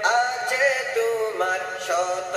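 A man singing a Bengali-language song, holding long, wavering melodic notes.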